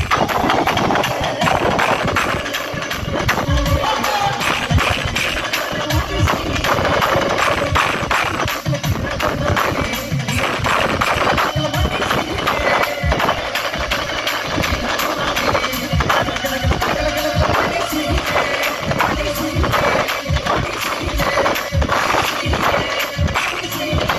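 Live Kerala folk music played through a stage PA, with loud, fast, steady drumming.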